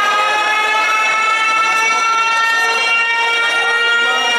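A loud siren-like tone from the dance's music mix over the sound system, rising slowly in pitch and then holding steady, with a crowd faintly underneath.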